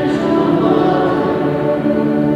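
Choir singing a hymn in held, sustained notes.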